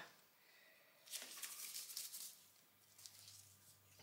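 Faint scraping and rustling as a loaf of soap is handled on a multi-wire soap cutter and its wire frame is lowered onto the loaf. There is a burst about a second in and a shorter, weaker one near the end.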